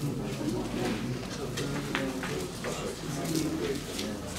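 Indistinct low chatter of several people talking among themselves in a meeting room, with a few light clicks and knocks in the middle.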